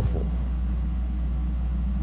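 A steady low hum and rumble in a pause between spoken sentences, with no other sound over it.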